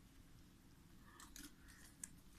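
Near silence, with a few faint, short scratchy rustles in the second half from kittens scrambling in a plastic crate.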